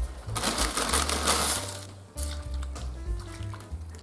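Background music with a stepping bass line and held notes. Near the start, a loud rushing noise lasts about a second and a half.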